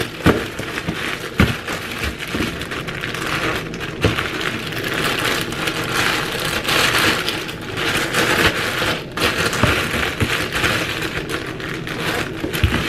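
Clear plastic zip-top bag crinkling and rustling steadily as it is handled, filled and pressed shut on a countertop, with a few sharp clicks and light knocks.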